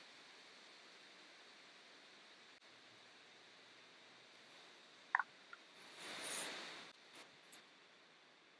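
Mostly near silence: faint room hiss, broken by a very short high blip about five seconds in and a soft rustling noise a second later, then two faint ticks.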